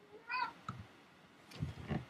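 A cat's single short meow, faint and brief, about a quarter second in, followed by a small click.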